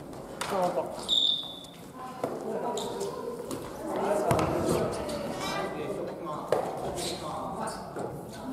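Badminton rally on a wooden gym floor: sharp clicks of rackets striking the shuttlecock and footfalls, with a short high squeak about a second in, amid players' voices calling out in the echoing hall.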